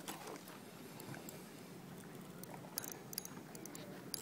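Faint steady background noise with a few light clicks from a spinning fishing reel about three seconds in, as a hooked fish is played on a bent rod.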